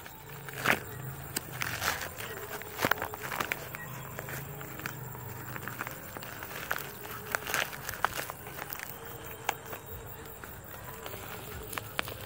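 A packaging bag crinkling and crackling as it is bitten and torn open with the teeth: a string of sharp, irregular clicks and crackles.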